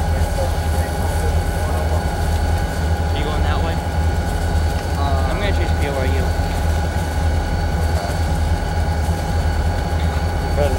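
Steady low engine hum of an idling vehicle, unchanging throughout, with faint voices around three and five seconds in.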